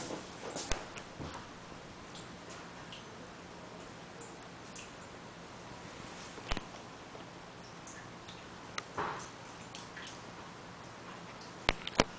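Faint steady low machinery hum, unchanged throughout, with a few light clicks and taps.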